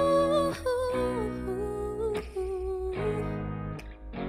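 A woman's voice singing a wordless, wavering melody over acoustic guitar chords that change about once a second.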